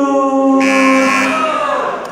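A man's announcing voice drawing out one long syllable on a steady pitch for about a second and a half, then tailing off as the winning corner is called.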